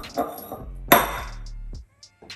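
Drinking glass rubbed in quick strokes against the neck of a glass bottle, glass scraping and clinking on glass, to make the drink inside foam. The rubbing stops about half a second in; a single sharp knock follows about a second in, over background music.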